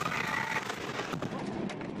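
Ammonium nitrate plant explosion heard on a bystander's camera: a rushing noise from the blast that slowly dies down, with a faint voice near the start.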